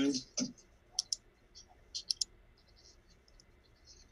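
Light clicks from working a computer: a quick pair about a second in, a run of two or three about two seconds in, then a few fainter ticks.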